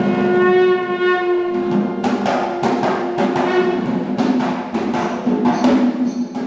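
Traditional Sri Lankan dance music: a long, steady wind-instrument note rich in overtones, then from about two seconds in a fast run of drum strokes from the dance's drums, the held note fading under them.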